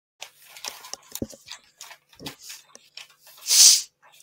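A man sniffling and making short wet nasal noises, then blowing his nose loudly into a tissue about three and a half seconds in.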